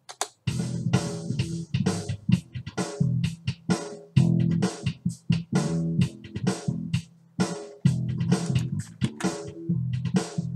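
Playback of a bass riff with a sampled EZdrummer 2 drum kit beat under it, steady rhythmic drum hits over the bass line, starting about half a second in.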